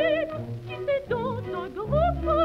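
French operatic soprano singing an aria with a wide vibrato over an instrumental accompaniment, on an old 78 rpm record of about 1930. A held note ends shortly in and a few shorter notes follow, then the voice slides up into a high note near the end.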